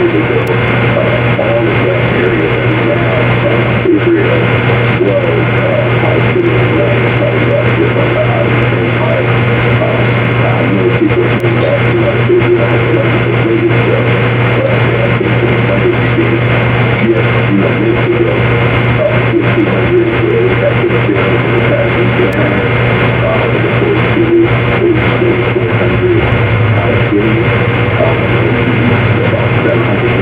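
Loud, steady low hum under a dense hiss, with an indistinct wavering murmur running through it like muffled voices or music that never forms clear words.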